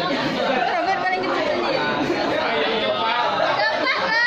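Several people talking at once in a room: steady, overlapping chatter with no single voice standing out.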